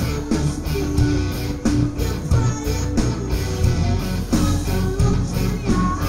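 Live metal band playing loudly: electric guitar over heavy bass and a steady drum beat.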